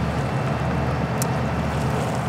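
Steady low diesel drone of a river towboat under way, over a constant wash of water and air noise.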